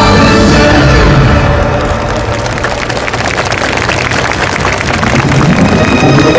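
Show music drops away about a second in, leaving a dense patter of many hands clapping, the audience applauding. New music starts again near the end.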